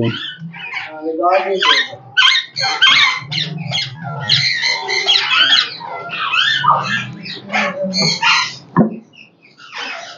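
An Alexandrine parakeet hen sitting on her eggs in a nest box gives a quick run of harsh, rasping growls and squawks. A single knock comes near the end.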